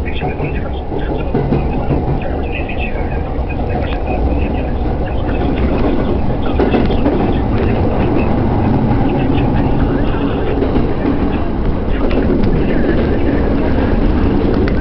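Electric train running, heard from inside the carriage, gradually growing louder as it gathers speed away from a station.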